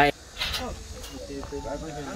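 Faint, indistinct chatter of people talking in the background, with a short hiss about half a second in.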